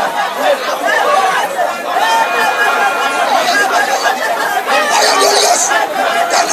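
Many voices praying aloud at once, a congregation in loud simultaneous group prayer, with the overlapping words blurring into a continuous babble.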